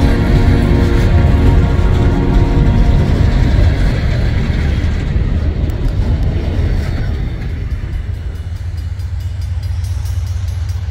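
Empty woodchip cars of a Norfolk Southern freight train rolling past, a steady low rumble. Background music fades out over the first three seconds.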